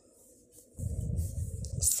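Low, dull rubbing and rumbling handling noise from hands and cloth moving while crocheting thread with a steel hook, starting about three-quarters of a second in; before that it is faint.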